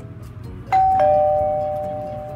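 A two-note ding-dong doorbell chime: a higher note about three-quarters of a second in, then a lower note a moment later, both ringing on and slowly fading.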